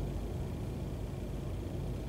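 Room tone in a pause between speech: a steady low hum with faint hiss and no distinct events.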